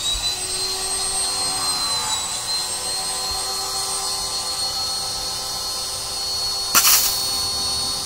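Small electric pressure washer running, its motor holding a steady high-pitched whine over a hiss of spray after spinning up. A short loud burst of noise cuts in about seven seconds in.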